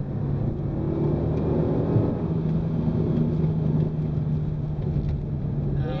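Renault Megane RS250's 2.0-litre turbocharged four-cylinder engine and exhaust running at fairly steady revs under way, heard from inside the cabin along with tyre and road rumble.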